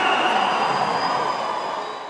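Large arena concert crowd cheering and shouting, many voices at once, fading out near the end.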